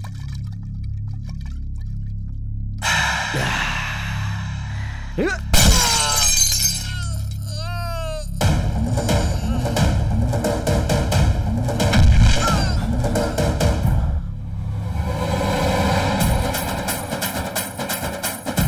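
Film soundtrack of dramatic background music with sound effects: a low drone, then a sharp crash about five and a half seconds in, followed by dense, pounding hits.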